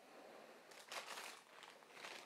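Faint rustling and crinkling of packaging being handled, strongest about a second in.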